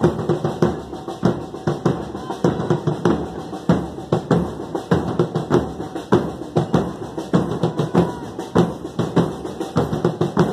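Murga percussion section playing bass drums with cymbals mounted on top (bombos con platillo), drum and cymbal struck together in a steady, driving beat with strong accents about twice a second.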